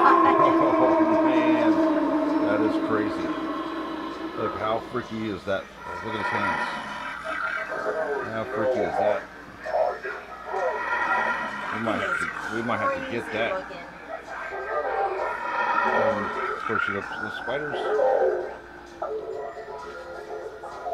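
Halloween animatronic ghoul prop playing its recorded sound through its speaker: a long held wail that falls away over the first few seconds, then a voice speaking in bursts.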